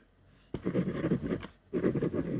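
Ballpoint pen writing on white paper on a desk: a brief hush, then a run of quick scratching strokes starting about half a second in, a short break, and more strokes near the end.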